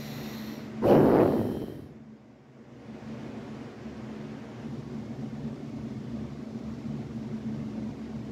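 A single loud breath out close to the microphone about a second in, fading over about a second, over a steady low background hum.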